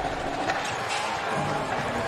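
Steady background noise of a basketball game in an arena, with a faint held tone and a few soft knocks.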